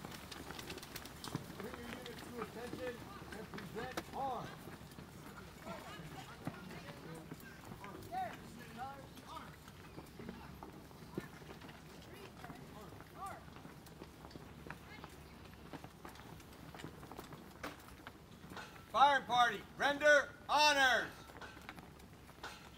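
Mostly quiet open air with faint distant calls. Near the end comes a run of about five loud, drawn-out shouted calls in quick succession: a rifle firing party's drill commands as the rifles come up for a 21-gun salute. No shots are fired yet.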